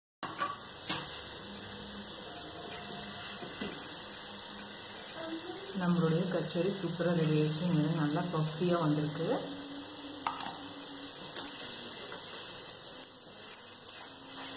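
Kachoris deep-frying in hot oil: a steady sizzle, with a few sharp clicks along the way.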